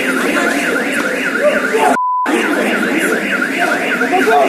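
An electronic alarm siren warbling rapidly up and down, about three times a second, over a crowd of men's voices. About two seconds in, a short censor bleep cuts through everything for a quarter of a second.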